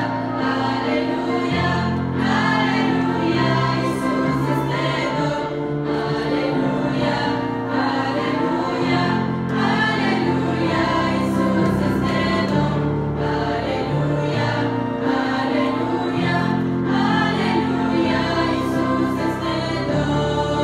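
A church choir of mostly women's voices singing a hymn together, with instruments holding sustained chords and a bass line underneath that change every second or two.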